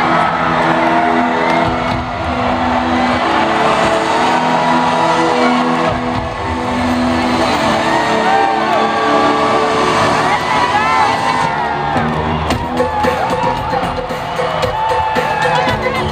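Arena crowd cheering and whooping over the sustained synthesizer chords of a live synth-pop song intro playing through the PA. A beat comes in about twelve seconds in.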